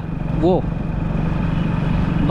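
Motorcycle engine running at a steady cruise, an even hum with road noise.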